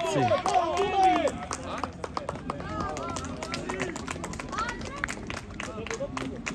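Live sound of a football match on an artificial-turf pitch. Players shout to each other, loudest in the first second, over many quick sharp knocks from running feet and the ball in play.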